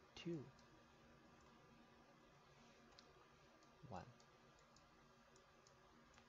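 Near-silent room tone with faint, scattered clicks of a stylus tapping a tablet as handwriting is added, and two short spoken numbers.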